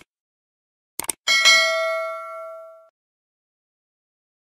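Sound effect of a subscribe-button animation: quick mouse clicks, then a bright notification-bell ding that rings out for about a second and a half before fading.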